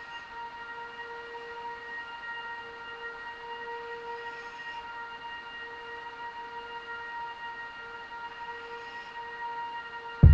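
Quiet documentary soundtrack music: a single note held steadily as a drone with its overtones, no beat.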